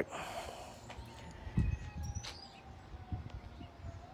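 A faint, distant siren wailing, its pitch falling slowly and then starting to rise again at the end. Under it is quiet outdoor background with a few low thumps from the phone being handled.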